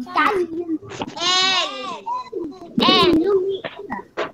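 Young children's voices calling out alphabet letter names in long, drawn-out, high-pitched calls, two of them: one about a second in and one near three seconds in, with shorter voice sounds between.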